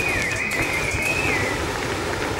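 Gas-fired pyrophone pipe sounding a single high held note that wavers, then slides down and fades about a second and a half in, over a steady rumble.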